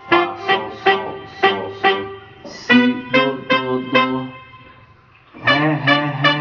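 Electronic keyboard played by hand: a run of short, detached chords about two a second, then a busier figure over a held bass note. After a brief pause comes a sustained chord with bass near the end.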